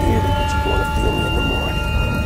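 Steady low rumble with a noisy hiss of rain-and-thunder sound effects, under a few thin held tones.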